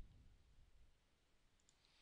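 Near silence, with a single faint computer mouse click at the start followed by a faint low rumble for about a second.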